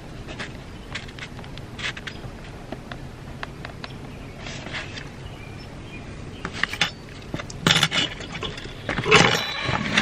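Faint scratching and small clicks of a heated wood-burning pen worked on a wooden disc, over a low steady hum. Near the end come louder knocks and clatter as the pen, its metal stand and the wooden discs are handled.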